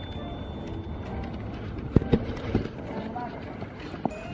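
Footsteps on fresh snow over a steady low rumble, with a few sharp knocks about halfway through, the first of them the loudest.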